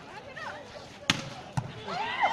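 A volleyball being struck by hand twice during a rally: a sharp slap about a second in, then a duller hit about half a second later, over crowd voices.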